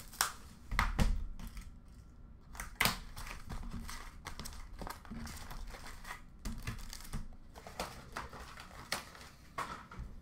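Cardboard trading-card hobby boxes being handled and opened: plastic wrapping crinkling and tearing, with irregular light knocks and clicks. The sharpest knocks come about one second and three seconds in.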